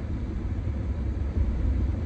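Steady low rumble of a car heard from inside its cabin while driving, engine and road noise with no other distinct events.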